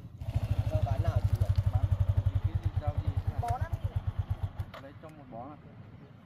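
Small underbone motorcycle engine idling with a rapid, even putter, stopping short about four and a half seconds in.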